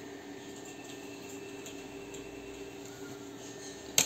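A steady low hum of room tone, with a sharp click right at the end.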